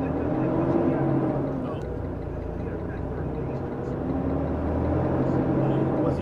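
Semi-truck diesel engine running, heard from inside the cab, its pitch rising and falling twice as the truck moves through the turn.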